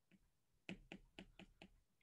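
Faint, quick clicks of a stylus tapping on a tablet screen during handwriting, about six or seven in a second.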